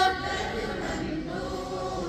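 A group of schoolgirls singing together in unison, unaccompanied. A louder phrase at the microphone ends right at the start, and the group carries on more softly.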